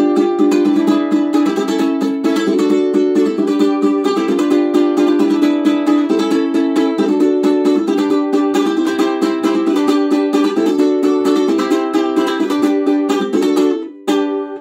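Ukulele strummed in a steady rhythm of chords, with no singing, breaking off right at the end.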